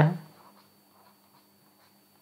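Faint light taps and scratches of a stylus writing on a tablet, a few scattered ticks after the first half-second.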